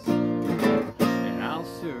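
Acoustic guitar being strummed, two strong strums about a second apart, each chord left ringing.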